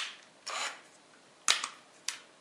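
Speed selector slide switch on a Hitachi DS12DVF3 cordless drill-driver being clicked between its two gear positions: two sharp clicks about a second and a half apart, with a soft rub of hands on the plastic housing between them.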